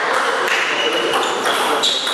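Table tennis rally: the ball clicking off the paddles and the table several times, about every half second.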